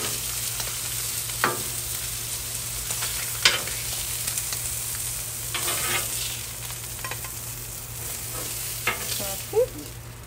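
Pork chops sizzling on a hot flat-top griddle. Metal tongs click and scrape against the griddle and plate a few times as the chops are lifted off, loudest about three and a half seconds in. A short rising squeak comes near the end.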